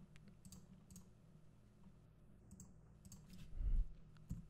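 Faint, scattered clicks of computer keys and mouse buttons as code is typed into an editor, with a louder low thump shortly before the end.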